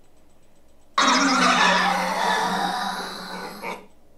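A harsh, loud scare sound effect from an MP3 player played through an amplifier and salvaged stereo speakers, set off by a motion sensor. It starts abruptly about a second in, eases off slightly and cuts off suddenly near the end.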